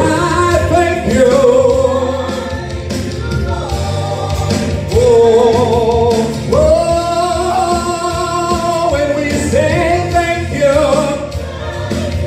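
A man singing a gospel song into a handheld microphone over instrumental accompaniment, holding long notes with vibrato.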